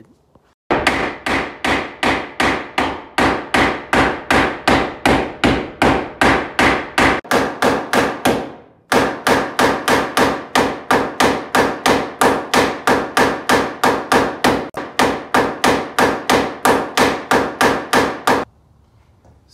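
Steel hammer striking the Nissan S13's chassis metal over and over, about three blows a second with a metallic ring, pausing briefly about eight seconds in before going on. The chassis is being bashed for clearance where the rear subframe was hitting.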